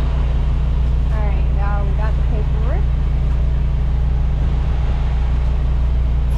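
Semi-truck diesel engine running steadily at low speed, heard inside the cab as a loud, even low drone. A few brief voice sounds come in about a second in.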